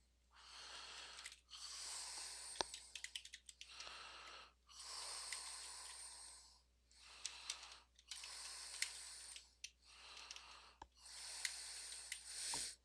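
A person's faint breathing, a soft breath every second or two, with a few keyboard key clicks now and then as commands are typed.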